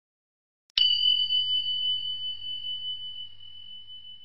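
A single high, bell-like ding struck about a second in, then ringing as a pure steady tone that slowly fades: a chime for the end-of-video logo.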